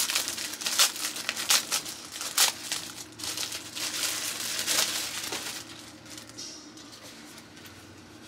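Clear plastic packaging bag crinkling and rustling in quick bursts as it is pulled open and the folded item worked out. It dies down to quiet handling about two thirds of the way through.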